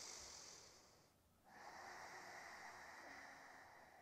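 A woman's slow, faint breathing through the nose: one breath fading out about a second in, then, after a short silence, a longer breath lasting almost to the end.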